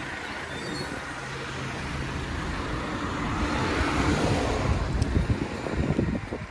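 Motor vehicle engine running close by, with street traffic noise: a low steady hum for the first couple of seconds, then a broader noise that swells to its loudest about four to five seconds in.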